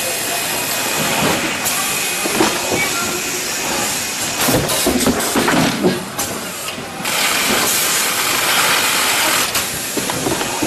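Pneumatic carton erector running: a steady hiss of compressed air with clattering knocks from the forming mechanism as cardboard boxes are pulled open and folded. The knocks cluster between about four and six seconds in, and the hiss grows louder about seven seconds in.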